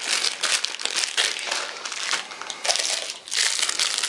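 Plastic food packets crinkling as they are handled: first a split instant-noodle packet, then a clear cellophane-wrapped packet. A dense, irregular run of crackles.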